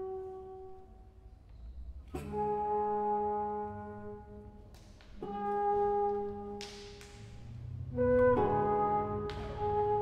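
Contemporary chamber music for alto flute, baroque alto trombone and classical guitar: long held notes, with new chords entering about two, five and eight seconds in and a few sharp attacks in between.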